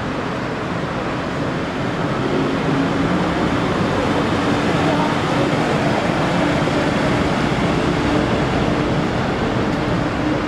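Engine of a road tourist train (a wheeled tractor pulling passenger carriages) running as it drives past, with a steady hum that grows slightly louder from about two seconds in as it draws near.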